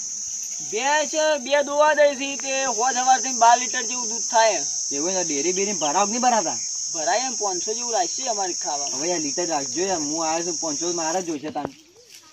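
A steady, high cricket chirring runs under people talking and cuts off suddenly near the end.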